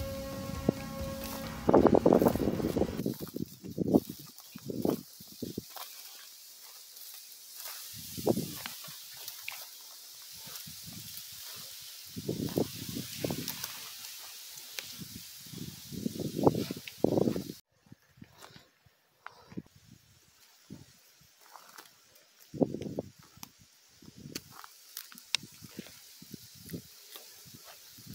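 Footsteps and rustling through dry grass and brush, an irregular run of short crunches and scuffs, with a few louder sounds in the first seconds.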